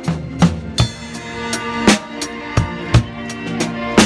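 Live band music led by a drum kit: snare and bass-drum strokes with cymbal in an uneven groove, two or three hits a second, over sustained keyboard or bass chords.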